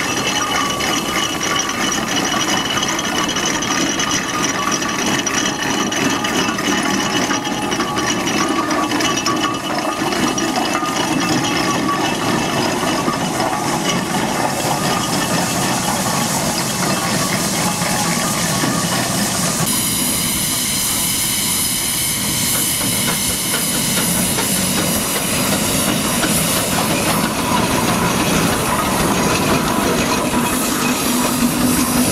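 Steam ploughing engine running steadily, a continuous mechanical clatter with hissing steam. About two-thirds through, the sound changes abruptly to a brighter, louder steam hiss as another steam engine takes over.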